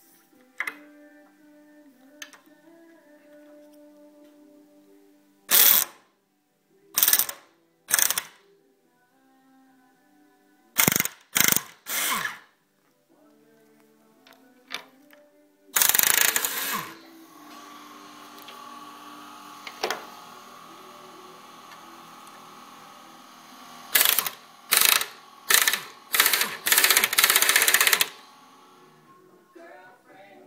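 Air impact wrench running in a series of short bursts, with a longer run near the middle, on the bolts of a plough's share points while the points are changed. Soft background music plays underneath.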